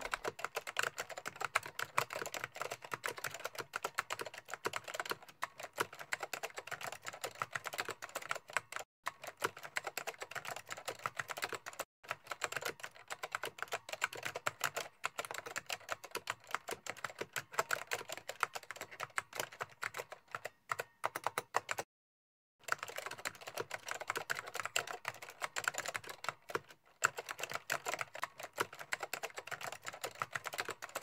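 Typing sound effect: rapid, continuous keystroke clicks that follow on-screen text appearing letter by letter. The clicks break off briefly a few times, with one half-second pause about two-thirds of the way through.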